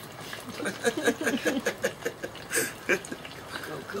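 Laughter and voices calling out, over a light crackle of food frying in the hot oil of an electric deep fryer.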